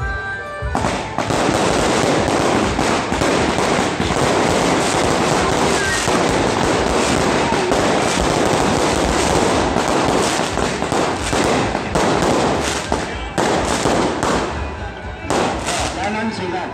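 A long string of firecrackers going off in a dense, rapid crackle. It starts about a second in, with a couple of brief breaks near the end.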